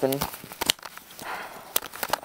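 Several sharp clicks and light handling rattles as the cover of an 80-amp fuse holder is popped open.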